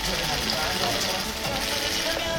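Indistinct voices of many people talking at once, a steady hubbub with no single voice clear.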